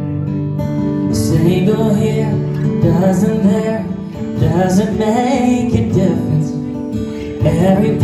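Live acoustic guitar being played, with a singing voice over it.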